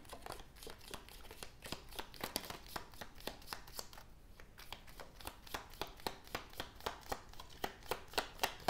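A deck of oracle cards being shuffled by hand: a fast run of light card-edge clicks, several a second.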